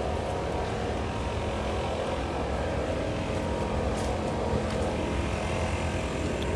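A steady low drone of distant engine noise, unchanging throughout, with a few faint clicks.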